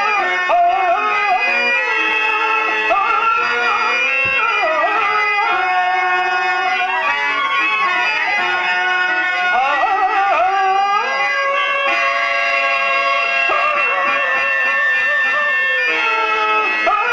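A male stage actor singing a Telugu drama verse (padyam) in long, ornamented, wavering phrases, with a harmonium holding steady notes underneath.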